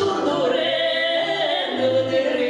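Two women singing a folk song in Udmurt as a duet, with held, gliding vocal lines over a steady low backing accompaniment.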